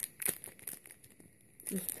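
Foil trading-card packet crinkling in the hands as it is worked at to tear it open, with a few short crackles in the first half second or so. The packet is hard to open.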